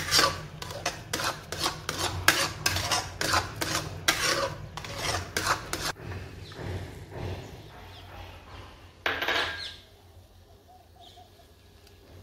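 Steel spatula scraping and stirring thick semolina halwa in an aluminium kadhai, in repeated strokes two or three a second that grow fainter after about six seconds. There is one louder scrape about nine seconds in, then it goes quiet.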